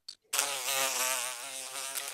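Insect-buzz sound effect for a segment title card: one continuous buzz with a slightly wavering pitch, starting a moment in and lasting about two seconds.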